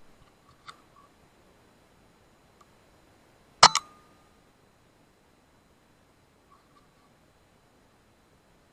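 A sub-12 ft-lb .25 BSA Scorpion SE pre-charged air rifle firing once about halfway through: a sharp crack followed almost at once by a second smack. A few faint clicks come before and after.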